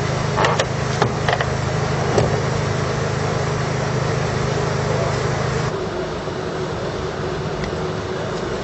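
A steady engine hum, typical of rescue equipment or an idling fire engine running at an extrication, with a few sharp clicks and knocks in the first couple of seconds. About six seconds in the hum drops away suddenly to a quieter background noise.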